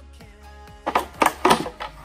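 A quick run of sharp plastic knocks and clatters starting about a second in, as the black plastic lid and housing of a Mercedes-Benz E350 BlueTec air filter box are pulled apart and handled, over quiet background music.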